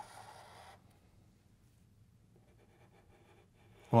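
Sharpie marker drawing a stroke on marker paper: a soft, scratchy hiss lasting under a second.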